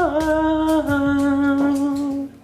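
A man vocalising long held vowel notes, stepping down in pitch twice, over a soft low beat in the first half.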